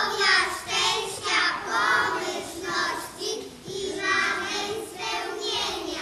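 Young children singing a song together, phrase after phrase with held notes.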